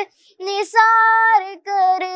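A boy singing an Urdu patriotic song unaccompanied: a short pause, then long held notes.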